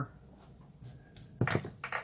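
Two short knocks close together about a second and a half in, from kitchen containers being handled and set down on a countertop, in an otherwise quiet room.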